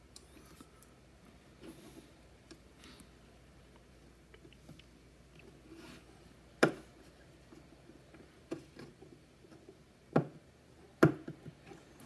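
Quiet handling of small wire leads and L298N motor-driver boards on a desk, with four short sharp clicks in the second half, the loudest near the end.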